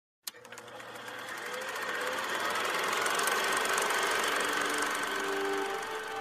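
Film projector sound effect: a sharp click, then a fast mechanical clatter of the film running through, growing louder. Music notes come in near the end.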